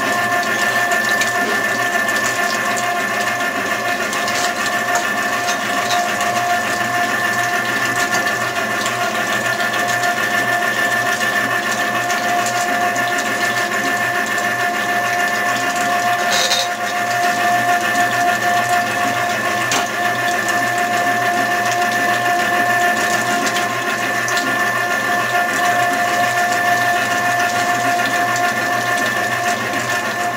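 Electric tomato-straining machine's motor running with a steady whine as boiled tomato pulp is forced through it and comes out as liquid sauce.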